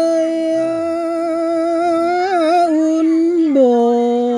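A singer's voice holding one long note of a Mường folk song, wavering slightly, then stepping down to a lower held note about three and a half seconds in.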